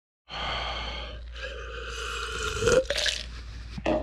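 A man's long, drawn-out burp in two stretches, after a drink from a glass. A couple of short clicks follow near the end.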